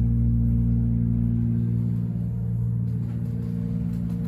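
Hydraulic elevator running, heard from inside the car: a steady low hum with several fixed tones from the hydraulic power unit. The deepest rumble eases off about a second and a half in.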